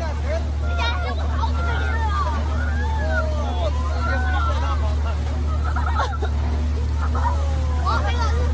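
Several people shouting and exclaiming over one another, their voices rising and falling, over a loud, steady low rumble.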